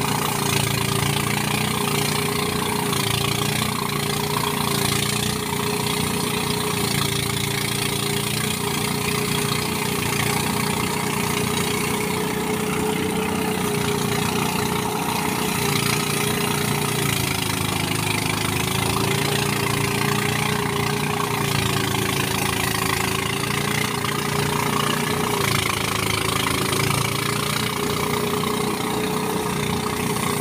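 Engine-driven rice thresher (mesin perontok padi) running steadily as rice stalks are fed into its drum: a constant machine drone with a high hum that wavers slightly in pitch.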